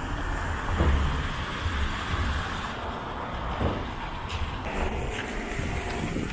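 Street traffic: a car driving past on wet asphalt, its tyre hiss and engine loudest about a second in, then easing to a steady traffic background.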